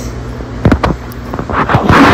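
Fingers working through calcium chloride pellets in a small glass beaker and then lifting the beaker: a few light clicks, then a louder rustling scrape near the end.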